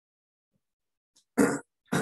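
A person clearing their throat twice in two short, loud bursts about half a second apart, after a second of silence.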